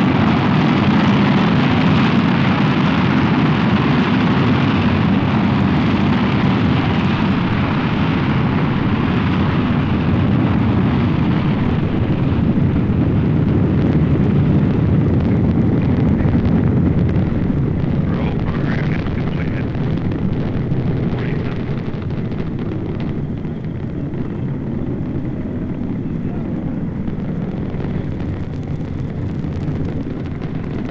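Saturn V launch vehicle's five F-1 first-stage engines running at full thrust during liftoff and climb-out: a loud, continuous low rumble. It loses some of its top and grows slightly quieter from a little past the middle as the rocket climbs away.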